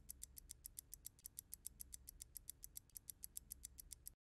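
Faint, rapid, even ticking, about seven or eight ticks a second: a clock-ticking sound effect.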